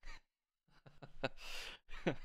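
A man laughing under his breath: a quick exhale, then a few short falling laugh pulses and breathy air.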